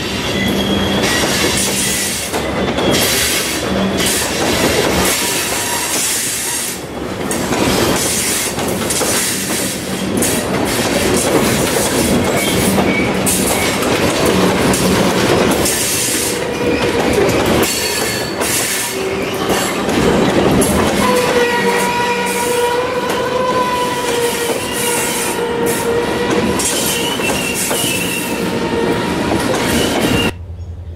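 Loaded covered hopper cars of a freight train roll past at close range, their wheels clattering over rail joints. From about sixteen seconds in, a high, wavering wheel-flange squeal with several steady tones rides over the rumble.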